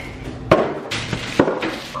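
Cardboard box handled and pulled free of a toaster oven, rustling and scraping, with a sharp knock about half a second in and two more knocks soon after.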